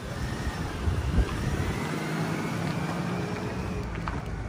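Pickup truck driving away slowly across a paved lot: steady engine and tyre noise, with a faint low hum in the middle.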